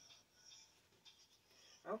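Near silence: room tone with a few faint soft rustles, and a woman's voice starting right at the end.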